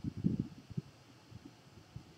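Quiet room tone from a desk microphone, with a few faint low sounds in the first second and near silence after.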